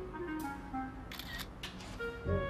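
Smartphone camera shutter clicks, a few in quick succession, over soft background music with a slowly descending melody.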